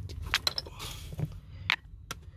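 Handling noise from wiring and plastic connectors being moved by hand: four or five short, sharp clicks with a brief rustle in between.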